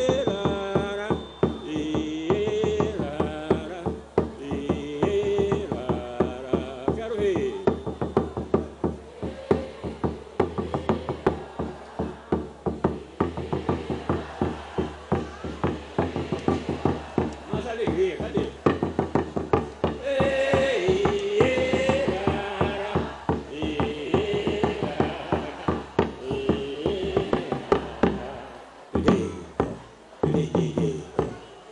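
Live Brazilian percussion and guitar music: wordless singing over fast, steady drum strokes on a small hand drum struck with a stick, with acoustic guitar accompaniment. The singing swells most in the opening seconds and again about two-thirds of the way in.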